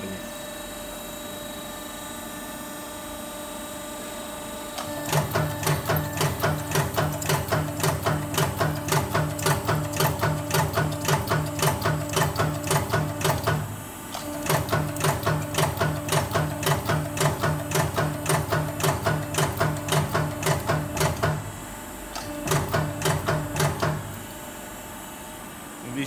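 Automatic die cutting press punching a metal jewellery strip through a die in continuous mode: rapid, evenly spaced strokes in three runs with two short pauses, after about five seconds of the machine humming steadily.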